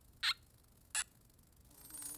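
Two brief cartoon sound effects, the first about a quarter second in and the second about a second in, against near silence.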